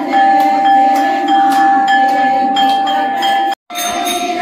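Temple bell ringing continuously: a steady high ringing tone with quick metallic clinks, which cuts off suddenly near the end.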